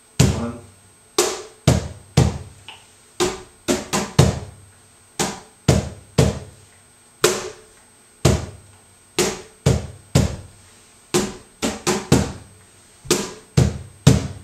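Cajon played by hand in a slow tientos compás: deep bass strokes alternating with brighter slaps, roughly one or two strokes a second. Quick two-stroke pickups lead into some of the downbeats.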